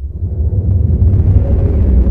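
Deep rumbling transition sound effect under an animated TV logo sting, swelling in over about half a second and holding steady, with faint held tones above the rumble.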